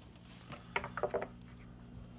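A few short, light clinks of kitchenware, a utensil against a bowl or dish, about half a second to a second in, over a steady low hum.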